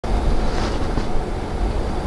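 Steady road and engine rumble of a car driving at street speed, heard from inside the cabin.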